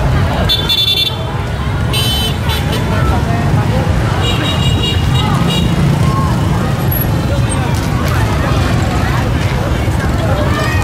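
Crowd chatter over a steady low rumble, with a high-pitched horn honking three times in the first six seconds, the third honk the longest.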